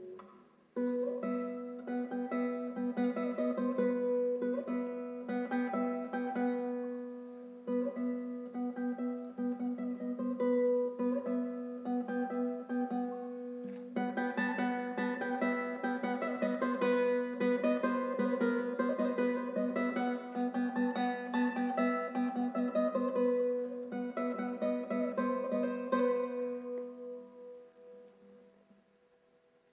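Solo nylon-string classical guitar (a Luthier L Nine.C cocobolo) played fingerstyle: rapid repeated plucked notes over a steady low note, with brief pauses about 8 and 14 seconds in. The playing fades out near the end.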